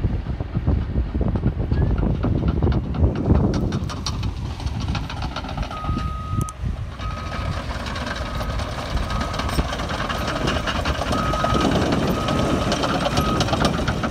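A bulldozer's diesel engine running with a heavy rumble and rattling clicks. From about six seconds in, its backup alarm beeps steadily, roughly once every 0.7 seconds, as the machine reverses.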